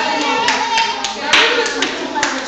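Children and adults talking in a room, with a few short sharp clacks; the loudest, about a second and a half in, is a brief clap-like burst.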